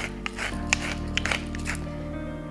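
Background music with sustained tones, over which a pepper mill grinds black peppercorns in a few scattered small crackles.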